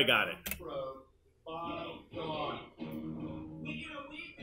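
A brief bit of speech, then a song with a steady beat begins a second and a half in, played back from a video-editing timeline through a classroom's speakers.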